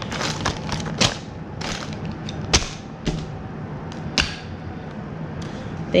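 Plastic packaging crinkling and rustling, with several sharp clicks and knocks as small camera accessories are handled and packed away.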